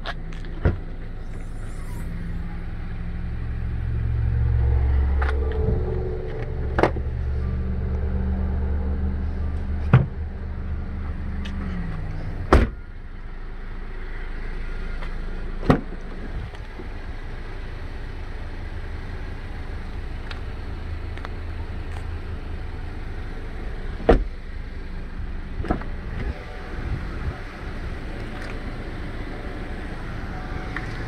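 A motor vehicle's engine running close by: it builds about four seconds in, holds, and falls away about twelve seconds in, leaving fainter traffic rumble. Several sharp clicks and knocks come at intervals throughout.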